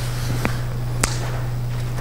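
Pause in a lecture: a steady low electrical hum from the hall's microphone and sound system, with two short faint clicks, the second about a second in.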